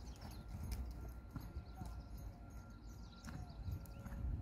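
Faint hoofbeats of a horse moving on a sand arena, soft irregular thuds.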